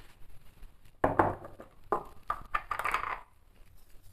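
Hands working a soft butter-and-sugar sablé dough in a glazed ceramic bowl: a sharp knock about a second in, then several short squishing, rustling noises over the next two seconds.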